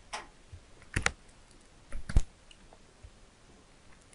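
Sharp clicks of a computer being worked with pen and controls: one at the start, a pair about a second in, and a louder pair about two seconds in.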